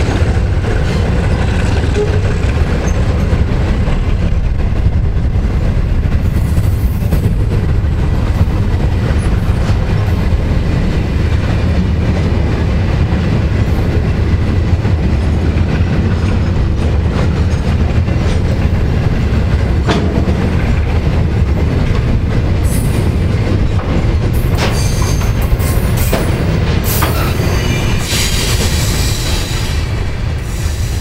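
Ballast hopper wagons rolling past at close range: a steady heavy rumble of steel wheels on the rails, with a sharp click about two-thirds of the way through. High-pitched wheel squeal comes and goes in the last several seconds as the tail of the train passes.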